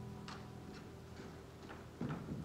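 Faint footsteps on a stage floor, light ticks about two a second, over the last note of the song dying away.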